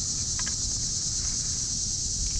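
Steady high-pitched insect chorus, with a low rumble beneath it.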